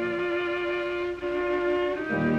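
Viola holding a long bowed melody note over a thin piano accompaniment, moving to a new note a little past one second in, while the low piano chord dies away near the start. It is an early Columbia 78-era recording of viola and piano.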